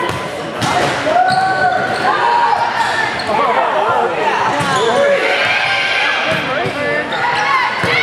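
Volleyball rally: sharp smacks of the ball being served and played, under players and spectators calling and shouting, echoing in a gymnasium.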